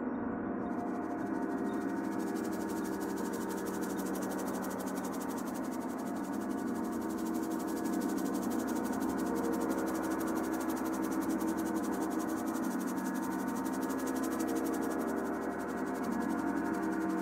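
A large gong and singing bowls ringing together in a dense wash of sustained, overlapping tones. From about half a second in, a fast, fine shimmering pulse joins high above the tones.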